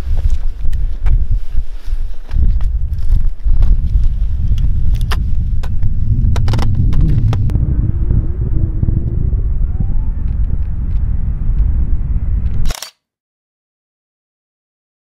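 Wind buffeting the camera's microphone, a loud, gusting low rumble with scattered clicks and knocks, that cuts off suddenly near the end.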